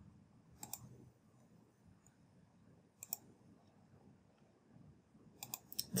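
Faint computer mouse clicks: a pair about a second in, another pair near the middle, and a quick run of several just before the end.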